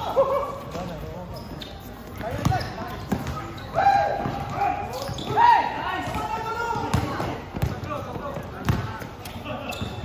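A basketball bouncing on a hard court during play: several separate thuds scattered through the moment, among players' shouts and calls.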